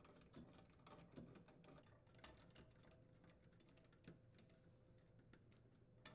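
Near silence with faint, irregular small clicks from a nut driver and hands working the screws on the auger motor assembly's metal mounting plate.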